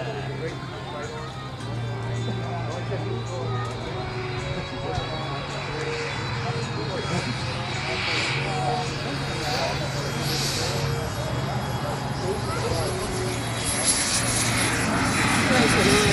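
Turbine engine of a radio-controlled model A-10 jet on final approach, a steady whine that grows louder as the plane comes in to land.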